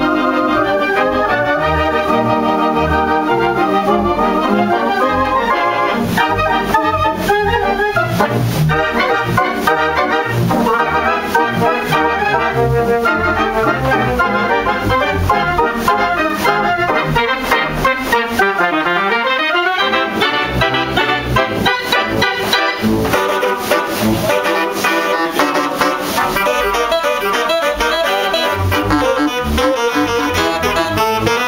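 Pipe organ playing a piece, heard from inside its pipe chamber, playing back a performance recorded by an organist. Many sustained notes sound at once with a wavering vibrato. About 18 seconds in, one sound sweeps down in pitch and back up.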